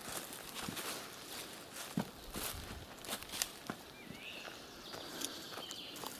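Footsteps of several people walking on a loose sandy dirt path strewn with twigs: irregular crunches and the odd snap of a stick.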